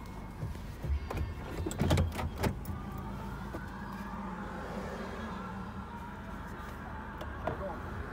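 Vehicle cab interior with a steady low engine hum. A few sharp clicks and knocks come in the first couple of seconds, and a steady low hum sits in the middle.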